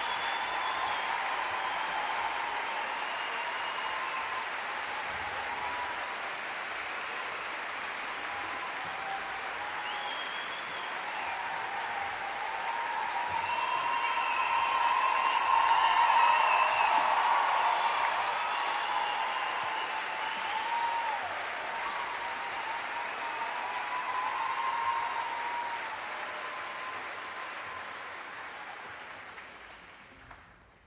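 Large concert-hall audience applauding and cheering, building to a peak about halfway through and then dying away near the end.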